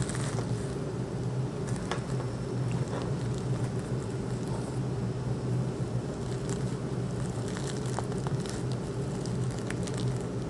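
Soft rustling and scattered small crackles as a thin ribbon is wrapped and tied around a handkerchief bundle of netting and potpourri, over a steady low hum.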